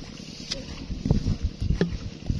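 Wind buffeting the microphone outdoors: an uneven low rumble, with three faint clicks spread through it.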